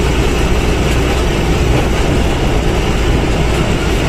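Truck's diesel engine and road noise heard from inside the cab while driving, a steady loud drone with a strong low rumble.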